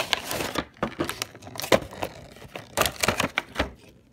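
Pokémon trading card collection box being opened by hand: cardboard and a clear plastic insert tray crinkling and clicking in irregular clusters of sharp taps.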